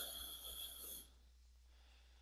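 A person's breath close to the microphone, ending about a second in.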